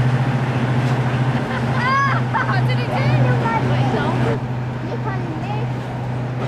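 Class 55 Deltic locomotive's Napier Deltic two-stroke diesel engines running with a steady low drone as it moves through a level crossing.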